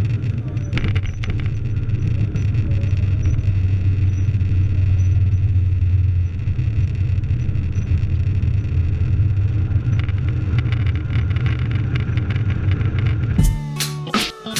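Cabin noise of a Boeing 777-300 on landing, heard from a window seat over the wing: a steady deep rumble from the engines and the runway that swells for a few seconds in the middle. Music with a beat cuts in near the end.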